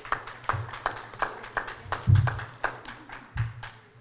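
A small group of people clapping, short sharp claps about three or four a second, with a few dull low thumps, the loudest about two seconds in.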